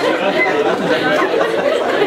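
Speech only: a man talking into a microphone, with voices overlapping as chatter in a large room.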